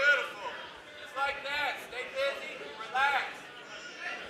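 A corner coach shouting short instructions to a grappling fighter from beside the cage, several brief shouts heard faintly over the hall's murmur.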